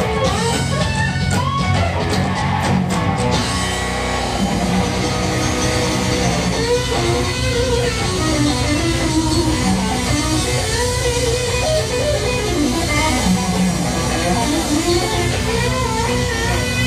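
A rock trio playing live: lead electric guitar with bending, gliding notes over bass guitar and drum kit, with cymbal hits in the first few seconds.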